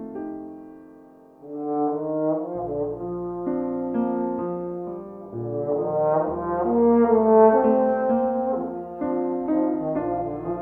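Trombone playing a blues melody over piano accompaniment, coming in about a second and a half in after a fading piano chord.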